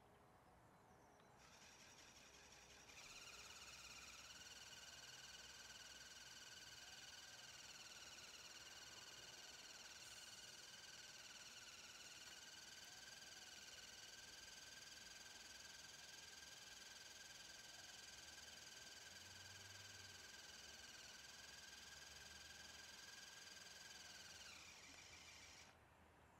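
Faint, steady high-pitched whine of the small electric motors in a brick-built Liebherr L586 wheel loader model. It starts a couple of seconds in, holds an even pitch, and dies away shortly before the end.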